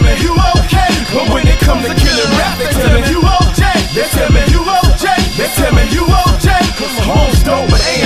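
Hip-hop track: a beat with a steady, heavy kick drum and rapped vocals over it.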